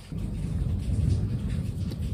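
Thunder rolling: a low rumble that sets in suddenly just after the start and keeps going.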